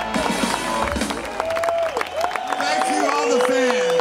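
Live rock band with electric guitars, amplified through stage speakers, playing loudly; a little after two seconds in the low end drops out, leaving sliding, bending held tones as the song winds down.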